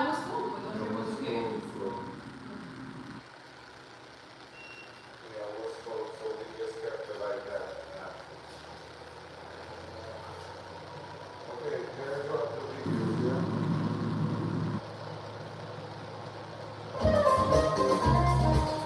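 Quiet voices in a large room with a low, steady rumble for a couple of seconds past the middle, then music with a beat starting loudly about a second before the end.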